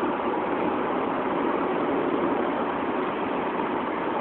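Steady car noise heard from inside the cabin: an even rush of engine and road sound with no breaks.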